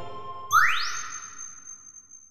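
Electronic ambient music: a sustained organ-like synthesizer chord fades away. About half a second in, a synthesizer tone sweeps quickly upward and settles into a high held note that slowly fades.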